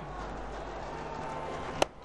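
Steady crowd noise of a cricket stadium, then one sharp crack of a cricket bat striking the ball near the end as the batsman drives it straight.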